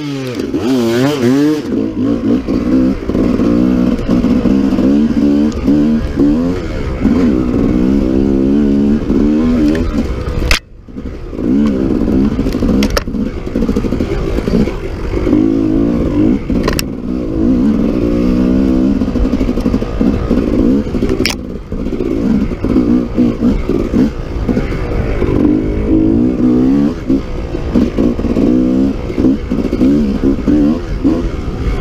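1995 Honda CRE 250 two-stroke enduro engine, heard from on board, revving up and down as the bike is ridden along a dirt trail. The throttle is chopped briefly about ten seconds in, and a few sharp knocks from the bike come through.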